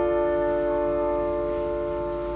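Steinway grand piano played four hands: a loud chord held on, ringing and slowly fading, with a few soft higher notes coming in about halfway.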